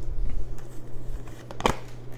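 Tarot cards being handled and laid down, with faint rustling and one sharp snap of a card about three-quarters of the way through, over a steady low hum.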